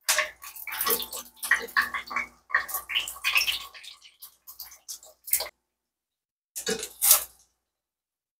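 Pempek fish cakes frying in hot oil in a pan, the oil spattering and popping: dense irregular crackling for the first few seconds, then a few separate pops.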